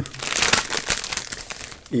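Shiny plastic mailer envelope crinkling as it is handled and opened by hand, busiest in the first second and thinning out toward the end.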